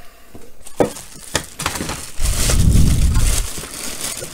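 A thin plastic bag used as packing wrap, crinkling and rustling as it is handled, with scattered small crackles at first and a louder stretch of crumpling about two seconds in.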